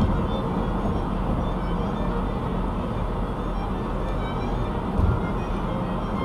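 Music playing over the steady road and tyre rumble of a car driving at highway speed, heard from inside the cabin, with a single low thump about five seconds in.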